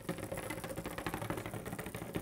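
Clockwork motor of a Critter wind-up toy running, its spinning off-centre weight making the toy judder on its long wire legs on a wooden tabletop: a fast, steady buzzing rattle.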